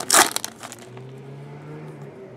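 Foil wrapper of a Panini Select hockey card pack being torn open and crumpled, with loud crinkling in the first half second. After that it drops to faint rustles and ticks as the cards are handled.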